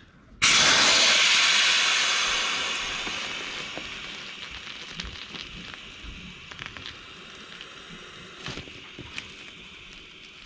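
Air rushing out of a Sea Eagle 385fta inflatable kayak's floor valve as it is opened to deflate the boat: a loud hiss starts suddenly about half a second in and fades slowly as the pressure drops, with a few light knocks later on.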